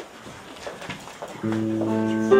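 Quiet room noise with a few small clicks, then, about a second and a half in, a sustained keyboard chord starts: the opening of a lullaby accompaniment.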